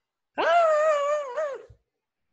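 A person's drawn-out, high-pitched 'ahh' of frustration, held for just over a second with a slight waver and a small rise and drop at its end.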